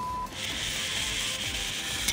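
Zip line trolley running along the steel cable: a steady, high-pitched whir that starts about a third of a second in.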